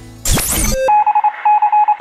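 Radio station time-check sound effect: a loud rising whoosh, a brief lower beep, then two quick runs of rapid high electronic beeps leading into the time announcement.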